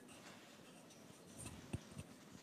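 Faint rustling and light handling noise from a handheld microphone being picked up, with one short, low thump near the end.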